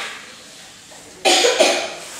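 A person coughing, a short double cough about a second in.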